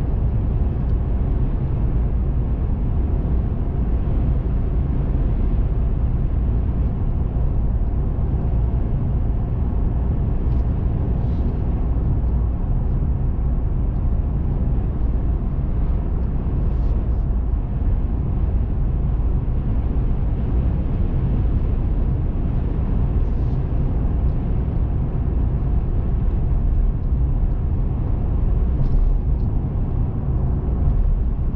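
Steady low rumble of a car driving at a constant speed: engine and tyre road noise heard from inside the cabin.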